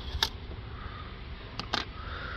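A few sharp clicks as a wire spring clip is worked off the intake hose at the throttle body: one shortly after the start and two close together near the end, over a low steady rumble.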